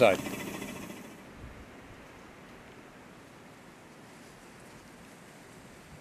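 Faint, steady background hiss with no distinct sound in it.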